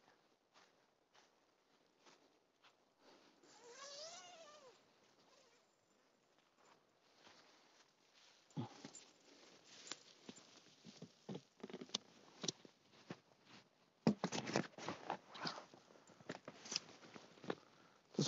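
Rustling and clicking of a parachute-nylon hammock tent's fabric and fittings as a man climbs in and sits down in it, loudest in the last few seconds. About four seconds in, a single faint call rises and falls in pitch.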